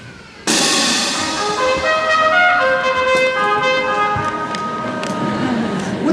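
School concert band playing a short interlude: after a brief hush the full band comes in loudly about half a second in, then holds sustained brass and woodwind notes that move through a melody.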